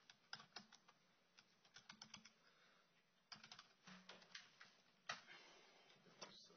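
Faint typing on a computer keyboard: irregular runs of sharp keystroke clicks with short pauses between them.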